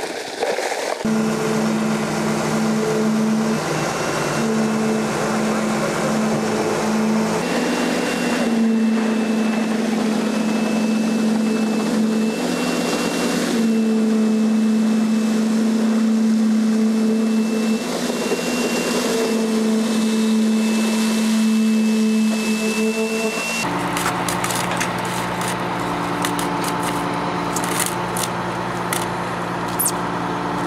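Concrete vibrator running with a steady hum, its pitch stepping slightly up and down as the head is worked through fresh concrete in the ICF wall. Near the end a different, lower machine drone takes over.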